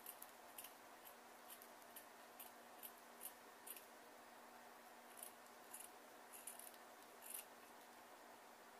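Scissors trimming craft material: a run of short, faint snips, then a pause of about a second and a half, then a few more.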